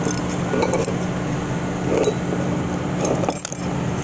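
A few light metallic clinks as a steel snap ring is worked into a 4L60E transmission case, over a steady low hum.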